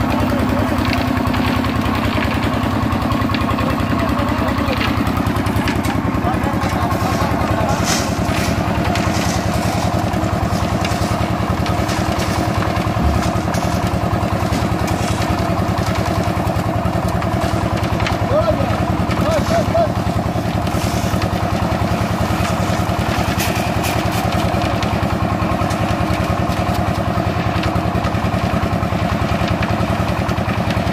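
Portable concrete mixer's engine running steadily at a constant speed, a continuous even drone.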